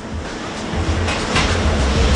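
Factory machinery running: a steady mechanical noise with a low rumble beneath, growing a little louder about halfway through.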